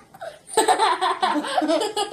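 Children laughing and giggling with marshmallows in their mouths, breaking out about half a second in after a short lull.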